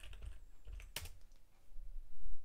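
Typing on a computer keyboard: a few key clicks, with one louder keystroke about a second in.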